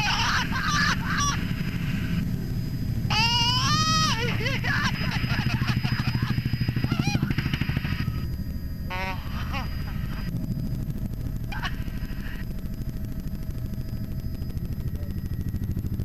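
Bell 206-series turbine helicopter heard from inside the cabin, its rotor beating fast and evenly over a steady turbine rumble. The turbine is at full power for a very low pass and climbing turn, and the noise swells about halfway through. A woman lets out an excited, rising cry of laughter about three seconds in.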